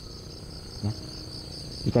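Crickets chirring steadily in a fast, even, high-pitched pulsing trill.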